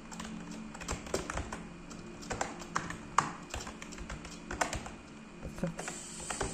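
Typing on a computer keyboard: irregular key clicks at an uneven pace, some strikes louder than others.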